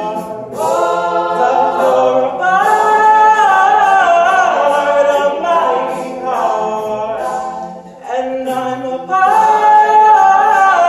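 Male a cappella vocal group singing in harmony, with held chords and no instruments. The singing thins briefly about eight seconds in, then comes back louder.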